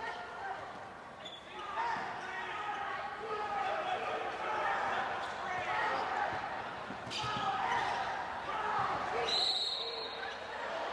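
A basketball bouncing on a hardwood gym floor during live play, under a continuous mix of players' and crowd voices in the hall. Near the end a referee's whistle blows shrilly, stopping play for a hard foul.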